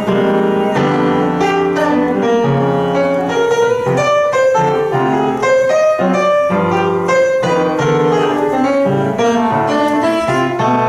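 Solo jazz piano on an acoustic upright piano: a continuous passage of chords and single-note lines with frequent new note attacks.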